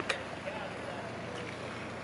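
Steady outdoor background noise: a faint, even hum with no distinct events.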